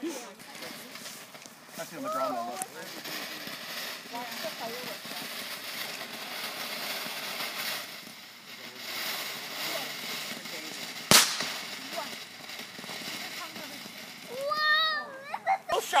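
Ground fountain firework spraying sparks with a steady hiss. A single sharp bang about eleven seconds in.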